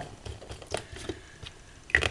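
Hands handling small craft items on a tabletop: faint scattered taps and rustles, with one sharper click near the end.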